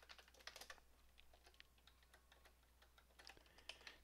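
Faint computer keyboard typing: irregular, scattered key clicks, densest in the first second.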